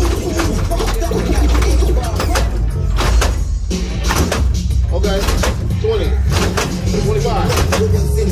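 Music with a heavy, stepping bass line and a steady beat, with voices over it.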